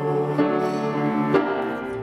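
Live music: a man singing with instrumental accompaniment.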